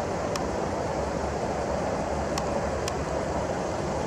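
Steady low hum with constant hiss, unchanging throughout, broken only by three faint, short ticks.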